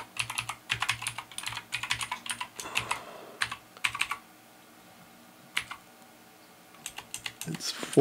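Typing on a computer keyboard: a quick run of keystrokes for about four seconds, a pause broken by a single keystroke, then a few more keystrokes near the end.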